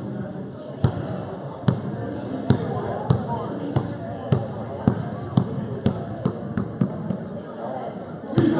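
Basketball dribbled on a hard gym floor close by, each bounce a sharp slap with a short echo. The bounces quicken from about one a second to about three a second near the end.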